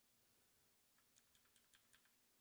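Near silence, with a quick run of about seven faint computer keyboard clicks in the second half.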